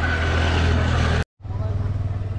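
Steady low rumble of a motor vehicle with road noise, which cuts out abruptly for a split second just past a second in, then carries on.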